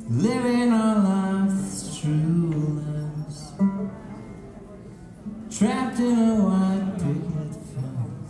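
Live band music: a voice sings two long held phrases, the first opening with an upward swoop, the second about two-thirds of the way through, over a plucked banjo and quieter accompaniment.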